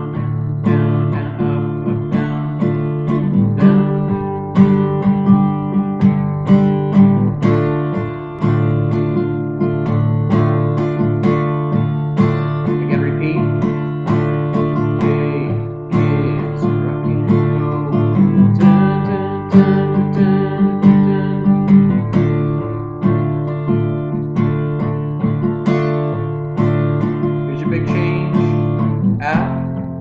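Steel-string acoustic guitar strummed steadily through a chord progression built on D minor, in a repeating down-down-down-down-up-up-down-down-down-up strumming pattern.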